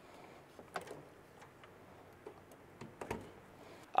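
Faint handling clicks of a power plug and cord being worked into a wall outlet, with a firmer click about three seconds in as the plug goes in.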